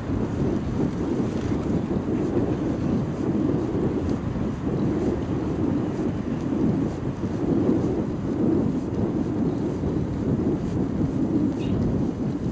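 Wind buffeting the microphone of a camera carried on a moving bicycle: a steady low rumble that swells and dips, with the ride's road noise underneath.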